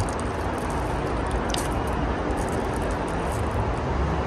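Steady street background noise with a low rumble of traffic, and a brief light crinkle of a snack wrapper being handled about a second and a half in.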